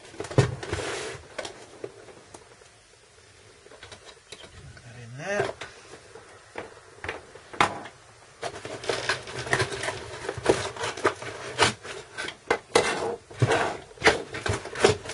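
Hands handling a soldering station's plastic case, its iron lead and plug, and a cardboard box: scattered clicks, knocks and rustles, with a lull early on and a busy run of clicking in the second half.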